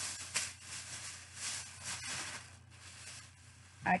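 A thin plastic shopping bag rustling and crinkling as it is handled, in uneven rushes that die down about three seconds in.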